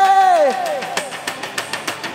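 A male singer's held final note on an isolated live vocal microphone, bending down in pitch and breaking off about half a second in, followed by a run of sharp percussive hits, the drum kit bleeding into the vocal mic, fading out.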